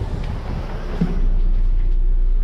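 Electron city bus running at a standstill: a steady low rumble with hiss, and a deeper hum that sets in and grows louder about a second in.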